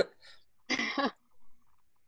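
A person clears their throat once, briefly, a little under a second in.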